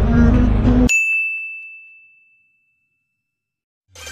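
Background music cut off by a single bright ding, one bell-like tone that rings and fades away over about two seconds.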